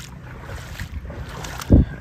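Outdoor background noise with wind on the microphone, and one short, loud low thump near the end.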